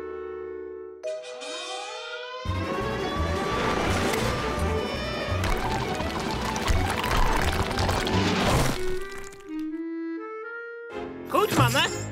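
Cartoon tunnel-digging sound effect: a spinning, drill-like burrow through earth and rock, heard as a dense churning noise with a pulsing low beat for about six seconds. Orchestral music runs under it, opening with a held chord and a rising run and closing with a few stepped single notes.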